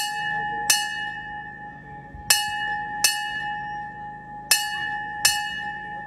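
A brass bell struck by hand in pairs of strokes, ding-ding, three pairs in all, each stroke ringing on with a clear, steady tone.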